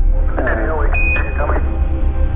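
Apollo 11 air-to-ground radio transmission: a distorted, radio-filtered voice with a high steady beep coming in about a second in, over a constant low hum.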